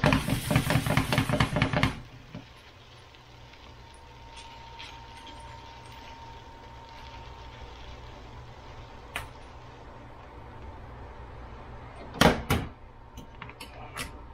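Cookware being handled while fried rice is served from a frying pan into a bowl. A loud burst of rapid scraping and clatter comes first, then a long stretch of steady low hum with a faint thin tone, and a few sharp knocks near the end as the pan goes back onto the glass stovetop.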